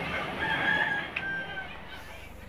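A rooster crowing once, a call of about a second and a half that holds one pitch, with a short sharp click partway through.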